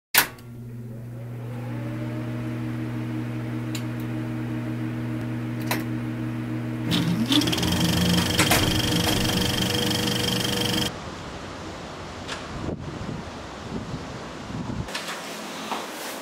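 Cinematic intro sound design: a sharp hit, then a steady low hum-like chord, a rising whoosh about seven seconds in that swells brighter and cuts off suddenly near eleven seconds, followed by quieter scattered sounds and, near the end, faint room tone.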